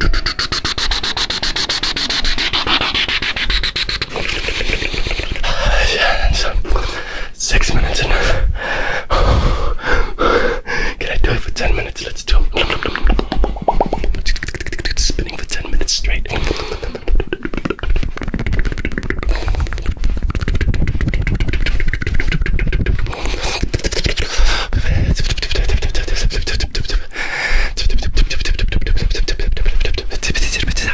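Fast, aggressive mouth sounds made close against the ear of a binaural microphone: a dense, unbroken run of rapid clicks and smacks.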